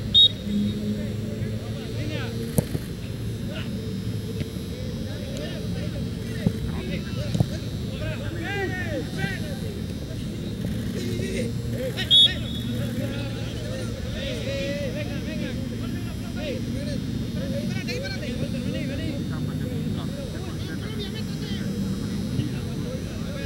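Two short, loud referee's whistle blasts, one right at the start and one about twelve seconds in, over the distant shouts of players and spectators on a soccer field and a steady background hum. A few sharp knocks are heard in the first half.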